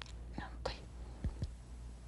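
Soft, brief speech: a quiet 'na'am, tayyib' ('yes, okay'), over a steady low hum.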